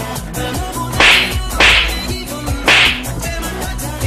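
Background music with a fast, ticking beat, cut through by three loud, short bursts of hiss, about one second, a second and a half and nearly three seconds in: edited-in sound effects over the soundtrack.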